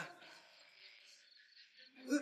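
Faint crickets chirping steadily in near silence, opening with one brief knock.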